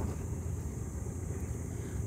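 Steady low outdoor background rumble with no distinct events, fairly quiet.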